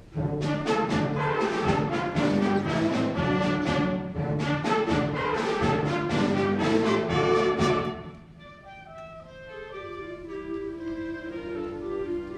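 A high school symphonic wind band starts a piece with a sudden loud full-band entrance, brass prominent and punctuated by sharp accents. About eight seconds in it drops to softer sustained chords that gradually build again.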